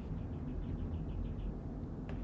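Faint scratching ticks of a stylus writing on a tablet screen, a short run of small strokes over a low steady hum.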